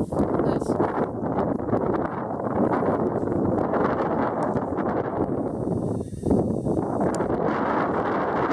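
Wind buffeting the camera microphone: a loud, steady rushing noise with a brief dip about six seconds in.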